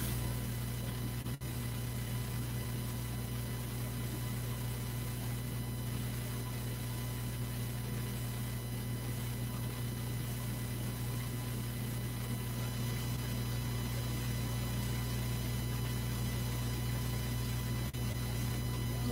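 Steady electrical mains hum with a background hiss, and a split-second dropout just over a second in.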